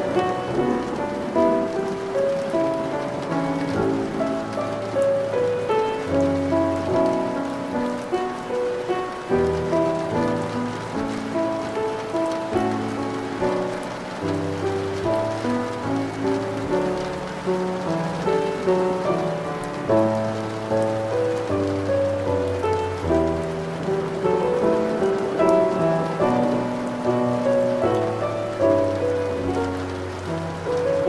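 Steady rain falling, mixed with slow instrumental music of held, overlapping notes over a low bass line that changes every couple of seconds.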